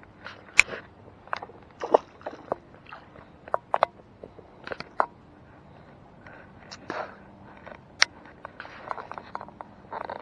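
Scattered short clicks, scrapes and rustles, about a dozen spread through the stretch: handling noise close to the microphone and steps on grassy, sandy ground.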